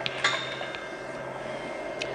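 Ethernet cable and its plastic plug being handled at a camera's connector: a couple of light clicks and a clink near the start, a fainter tick a little later, over a steady low room hum.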